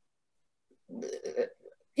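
Near silence, then about a second in a brief, faint, low mumble lasting about half a second: a speaker's hesitation noise in a pause.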